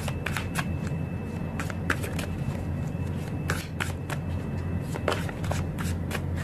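A deck of tarot cards being shuffled by hand: irregular soft flicks and slaps of card edges, a few at a time, over a steady low hum.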